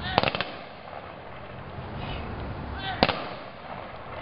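Ceremonial rifle volley salute: a slightly ragged volley of rifle shots about a fifth of a second in, and a second, sharper volley about three seconds later, each right after a short shouted command.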